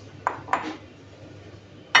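Ceramic bowls clinking and knocking against each other and the countertop as they are handled: two light clinks early on, then a sharper, louder clink near the end.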